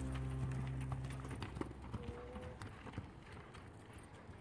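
Hoofbeats of a saddled horse loping on arena sand: faint, uneven thuds. Music fades out over the first second and a half.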